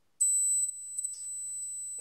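An 8,000 Hz pure test tone from a hearing test starts about a fifth of a second in and holds steady at one high pitch. A brief low hum sits under its first half second. The tone checks whether high-frequency hearing reaches 8 kHz.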